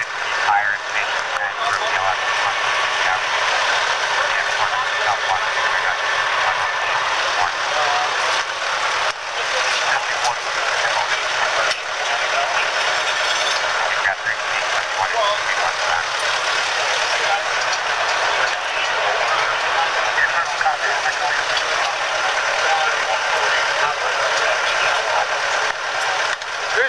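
SkyTrak telehandler's diesel engine running close by, a steady noise throughout, with indistinct voices under it.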